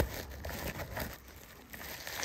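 Handling noise: rustling and rubbing of something soft against the phone's microphone, with a bump at the start, then growing faint in the second half.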